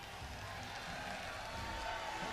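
Large concert audience cheering and applauding, growing steadily louder, with a few voices calling out over the crowd.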